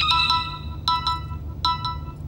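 Phone ringtone from an iPhone announcing an incoming FaceTime call: short groups of bright chiming notes repeating a little under once a second.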